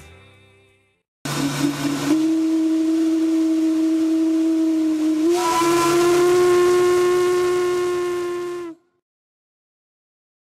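Riverboat whistle blowing one long, steady blast of about seven seconds with a hiss under it. Its pitch steps up slightly midway before it cuts off sharply.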